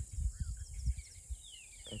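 A few short bird chirps, each falling in pitch, in the second half, over a steady high drone and a low, uneven rumble with thumps.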